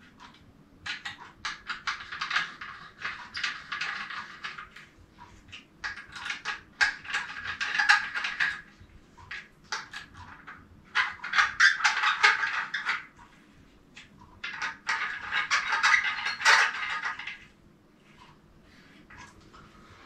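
Rapid metallic clicking in four spells of a few seconds each, with short pauses between: a 5 mm Allen wrench turning the bolts that fasten a paramotor's propeller to its hub, worked in a crosswise order.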